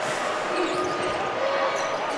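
Steady arena crowd noise during a basketball game, with a ball being dribbled on the hardwood court.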